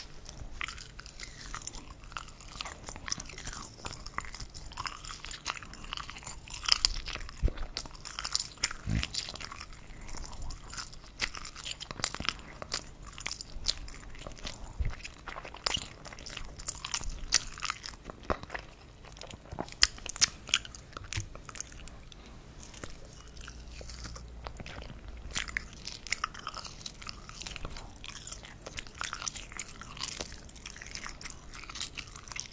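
Close-miked mouth sounds of a person chewing and biting soft wurstel (frankfurter sausage), a continuous run of irregular moist clicks and smacks with a few louder bites.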